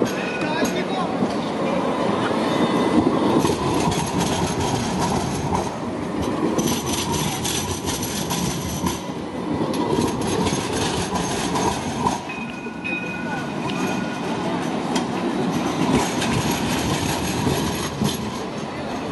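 Sydney Light Rail Alstom Citadis low-floor tram passing close by on a curved junction, its steel wheels rumbling on the rails. Thin high-pitched wheel squeals rise and fade at several points.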